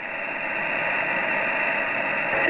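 Steady hiss of shortwave band noise from an Icom IC-7300 receiving 80 m single sideband (LSB) with no signal on the frequency, sounding narrow and thin because of the receiver's sideband filter. The hiss grows slightly louder through the pause.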